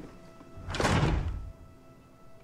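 Film soundtrack: a quiet, sustained music bed with a single sudden thud-like noise, about three-quarters of a second in, that lasts about half a second.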